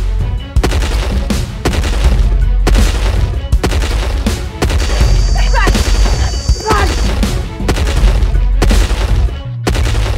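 Film soundtrack of rapid gunfire: repeated sharp shots in bursts over music with a heavy low rumble.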